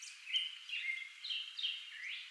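American goldfinch chirping: a quick series of short, high chirps, some level and some dropping in pitch, about nine in two seconds.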